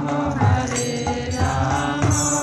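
Devotional mantra chanting, sung on held notes, with a drum keeping a steady beat underneath.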